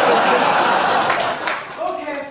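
Theatre audience laughing and cheering with some clapping: a loud crowd noise that starts suddenly and eases near the end.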